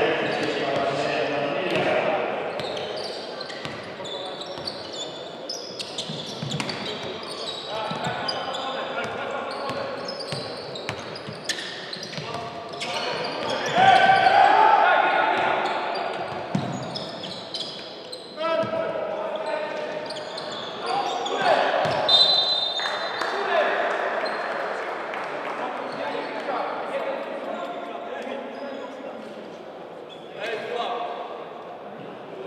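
Basketball being dribbled on a hardwood court, with players calling out to each other. The sound echoes in a large sports hall, and one louder call comes about fourteen seconds in.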